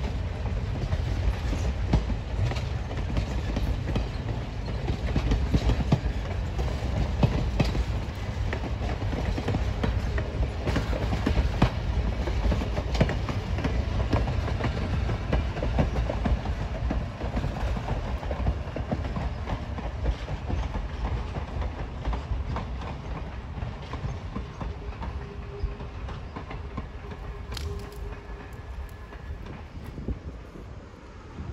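Passenger coaches of an excursion train rolling past: a steady low rumble with the clickety-clack of wheels over rail joints, easing off over the last several seconds.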